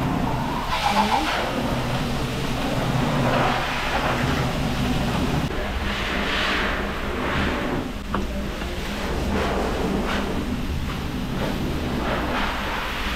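Water spraying and running from a dog-wash hose nozzle over a wet toy poodle and the tiled tub floor, over a steady low hum from the wash station's machinery.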